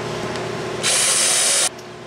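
Cordless drill boring a pilot hole through clamped boards. About halfway in comes a loud, hissy cutting sound lasting just under a second, then it cuts off suddenly as the drill stops.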